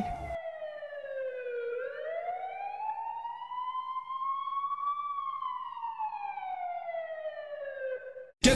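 Emergency vehicle siren in a slow wail: the pitch falls, climbs over about three seconds, then falls again.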